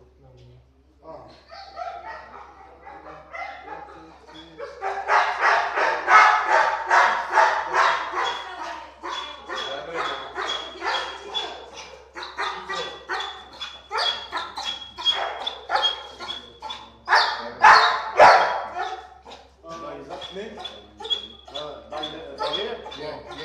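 Pit bull-type dog barking rapidly and excitedly, about three barks a second, starting about five seconds in and keeping on without a break.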